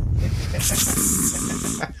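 Men laughing hard close to the microphone: wheezing, breathy laughter without voiced words, turning into a loud hissing rush of breath from about half a second in that stops just before the end.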